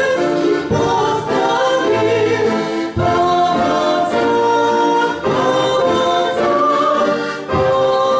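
Two women singing a song together into microphones, in long held notes, with short breaths between phrases.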